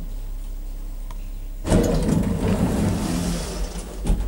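Low steady hum of an old two-speed traction elevator, then, about two seconds in, a sudden loud start of rumbling and clatter as the machine engages and the car begins to travel. A sharp knock comes near the end.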